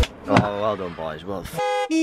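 A voice, then a short horn-like toot with a steady buzzing pitch about a second and a half in. A second, lower tone sounds briefly right at the end.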